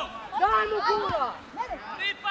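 Shouted speech, words not made out, loudest in the first second and a half and quieter near the end.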